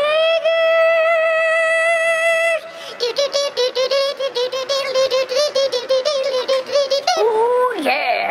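A man singing loudly in a high voice. He holds one long note for about two and a half seconds, then sings a fast run of short repeated syllables on nearly the same pitch, and slides down in pitch near the end.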